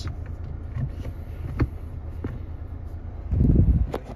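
Steady low hum of the Kia Seltos's 1.5 CRDi turbo-diesel idling, heard inside the cabin, with a few light clicks from the manual gear lever being handled. Near the end comes a short, louder low rumble as the phone is moved.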